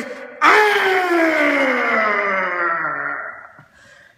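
A man's voice in one long, unbroken shout of about three seconds that slowly falls in pitch and fades away.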